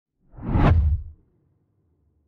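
A single whoosh sound effect with a deep rumble under it, swelling and fading within about a second, accompanying an animated logo reveal.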